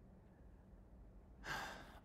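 Faint room tone, then about one and a half seconds in a single audible breath, a sharp intake or sigh lasting about half a second and fading away.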